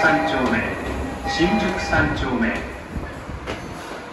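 Underground platform sound beside a stopped subway train. A voice talks through the first three seconds, and a short electronic tone of several steady pitches sounds twice. It quietens to a steady hum near the end.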